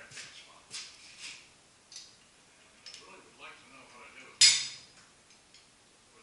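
Metal pieces being handled and set down on a machine's table, with light clinks and knocks and one loud, sharp metal clank that rings briefly about four and a half seconds in.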